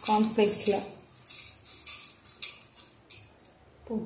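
Crushed cornflakes crackling and rustling as a bonda ball is rolled in them by hand in a bowl, with a few light knocks against the dishes.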